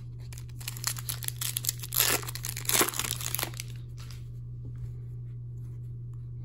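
Foil wrapper of an Upper Deck hockey card pack being torn open and crinkled by hand: a run of crinkly rips from about a second in to about three and a half seconds in, loudest around the middle, then only faint handling.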